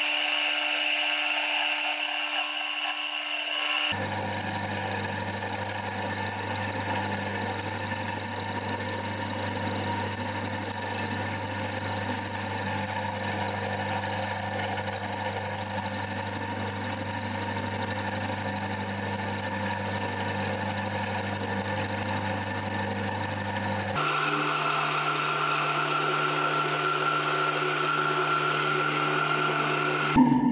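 Metal lathe running and cutting an aluminium rod with a carbide insert tool: a steady motor hum under the cutting noise. The sound changes abruptly about 4 seconds in and again about 24 seconds in.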